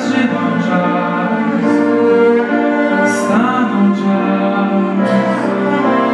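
Orchestra with a full string section (violins and cellos) playing sustained chords, accompanying a singer whose voice rises into held notes twice.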